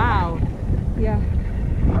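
Wind buffeting the camera microphone in flight, a steady low rumble from the paraglider's airspeed. A person's voice is heard briefly at the start and again about a second in.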